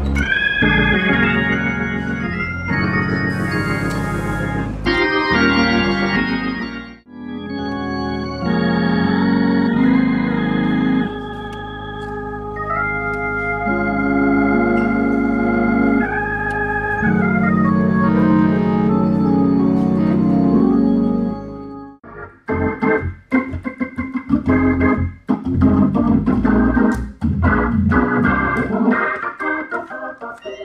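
Hammond organ playing, mostly long held chords with a brief break about seven seconds in. From about twenty-two seconds on it changes to short, clipped chords with gaps between them.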